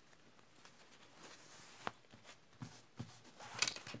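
Faint rustling of fabric and lining being turned out and smoothed by hand on a tabletop, with a single sharp click a little before two seconds in and a brief louder rustle near the end.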